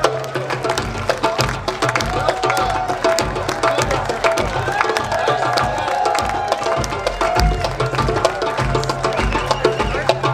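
A live band playing upbeat dance music, driven by a steady beat of hand percussion and drums.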